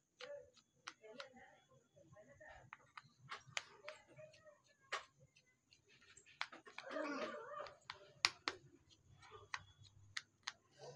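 Faint, irregular clicks and ticks of a precision screwdriver working the small screws out of a smartphone's midframe, the metal tip and screws tapping on the frame. A soft voice murmurs about seven seconds in.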